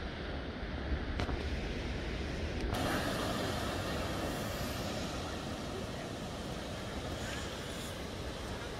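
Sea surf breaking and washing over rocks: a steady rushing noise that comes in suddenly about three seconds in. Before that, a low rumble with voices in the background.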